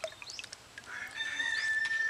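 A rooster crowing: a few short rising notes, then one long held note from about a second in.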